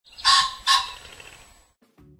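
A bird calls twice, loud and about half a second apart, each call fading off quickly, with the trailing sound dying away within about two seconds.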